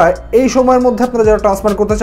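A man talking in Bengali over background music.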